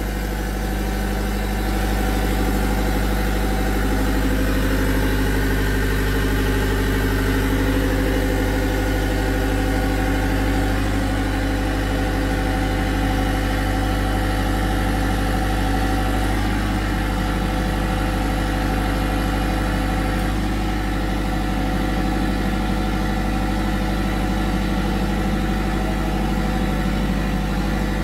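Kubota V3800T four-cylinder diesel generator sets running steadily at constant governed speed (1500 rpm, 50 Hz) with a continuous even drone, the two sets paralleled and sharing the electrical load.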